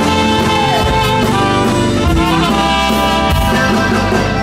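Live Tejano band playing, the horn section led by trumpet carrying the melody over bass and drums.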